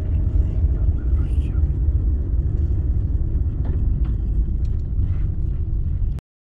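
Car driving slowly on a paved road, heard from inside the cabin: a steady low rumble of engine and tyres.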